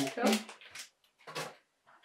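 A Lego minifigure blind bag crinkling and rustling in short bursts as it is torn open, with a brief spoken 'oh' at the start.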